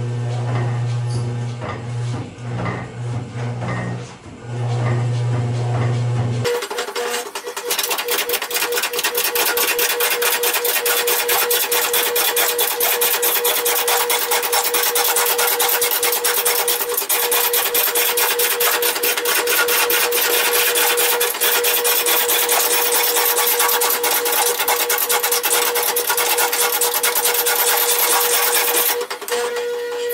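A roughing gouge cutting into a large poplar log spinning on a big lathe while the log is roughed round. For the first six seconds a low hum runs, broken by cuts. Then comes a sudden switch to a loud, continuous rasping scrape with a fast, even chatter over a steady tone, which stops shortly before the end.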